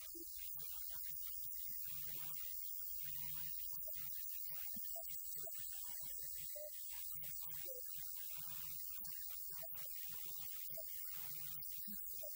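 Steady low electrical hum at a low level, with faint, broken traces of sound above it and no clear speech.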